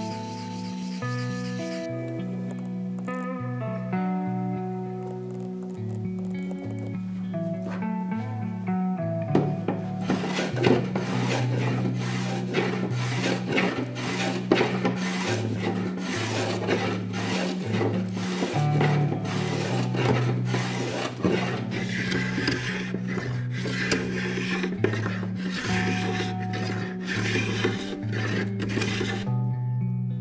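Background music with a steady bass line over woodworking sounds. Briefly at the start, a plane blade is rubbed on abrasive paper to sharpen it. From about ten seconds in come quick, repeated strokes of a sharp block plane shaving wood off a keel to bevel it.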